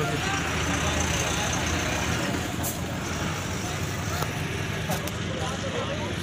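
Steady roadside traffic noise, a continuous low rumble of passing highway vehicles, with faint voices of people nearby.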